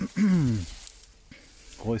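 Pea vines rustling as a hand searches through them for ripe pods. A man's voice makes a short falling 'hm' just after the start and clears his throat near the end; the voice is the loudest sound.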